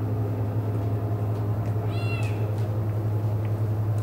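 A steady low hum, with one short, high, slightly falling call about two seconds in, like an animal's cry.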